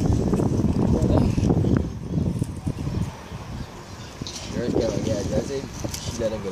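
People's voices talking and calling out, with loud low rumbling noise over the first two seconds.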